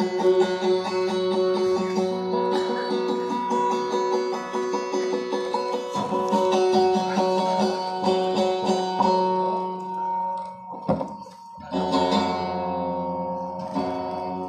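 Guitar playing a fast, repeating picked melody, dropping away briefly about eleven seconds in before carrying on.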